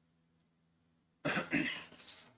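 Near silence, then a man's short cough a little past a second in, fading out quickly.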